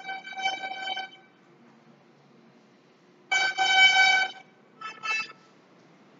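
Vehicle horn honking at one steady pitch: a choppy blast in the first second, a longer blast about three seconds in, and two short toots near the end.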